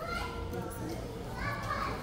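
Store ambience: faint, distant voices over a low steady hum. A little louder voice chatter comes in over the second half.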